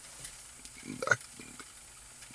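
A pause in a man's talk, with faint background noise and one short spoken syllable about a second in.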